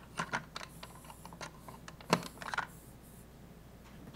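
Typing on a computer keyboard to log in: a run of irregular key clicks with one louder tap about two seconds in, stopping about three-quarters of the way through.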